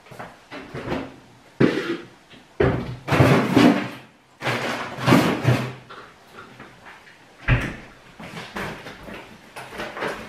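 Groceries being put away in a kitchen: cupboard doors opening and shutting with knocks and handling noise, in several separate bursts, with a sharp knock about a second and a half in and another about three-quarters of the way through.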